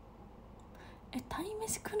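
Quiet room tone, then a woman begins speaking softly about a second in.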